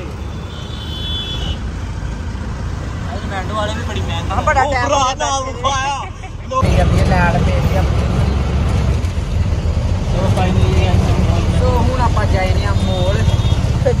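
Auto-rickshaw engine and road noise heard from inside the open cab while riding: a steady low rumble that jumps abruptly louder about halfway through, with voices talking over it.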